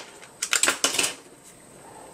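Plastic Raspberry Pi case being taken apart by hand: a quick cluster of light plastic clicks and clatters from about half a second to a second in, then quiet handling.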